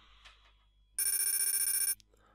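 Kahoot! electronic sound effect: a bright, steady ringing tone lasting about a second that starts about a second in and cuts off sharply, sounding as the scoreboard rankings update.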